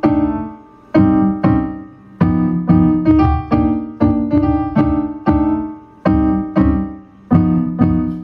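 Piano-sounding keyboard played in chords, about two struck chords a second, each ringing and fading before the next.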